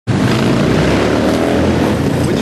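Loud street traffic: vehicle engines running with a steady low rumble, cutting in suddenly.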